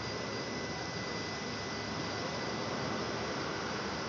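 Steady hiss of compressed natural gas being dispensed at a CNG filling station, with a faint steady high whine.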